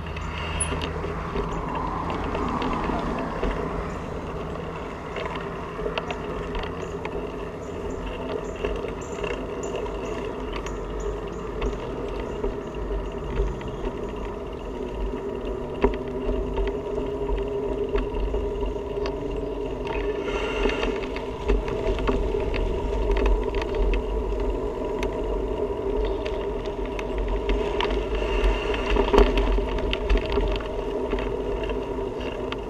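A bicycle rolling along a concrete sidewalk, heard from a camera mounted on the bike: a steady rumble of tyres and road with many small clicks and rattles, and a few sharper knocks, as it runs over the cracks and joints in the pavement.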